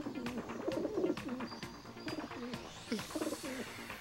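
Pigeons cooing in repeated low, wavering calls. Near the end a rising whoosh begins.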